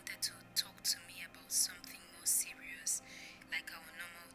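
Soft, whispered speech with sharp hissing 's' sounds, over faint background music.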